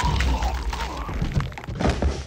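Film soundtrack with a run of heavy thuds and sharp hits over a deep rumble, ending in one strong hit near the end.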